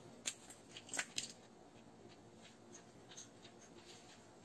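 A few light clicks and taps in the first second or so as a pen and a plastic ruler are picked up and laid on the paper, then near silence.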